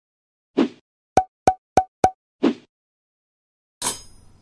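Cartoon pop sound effects for an animated logo: a soft plop, four quick sharp pops about a third of a second apart, then another plop. Near the end comes a louder, brighter hit with a short ringing tail.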